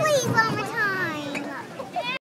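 A child's high-pitched voice calling out excitedly, its pitch sliding downward, with other people's voices around it.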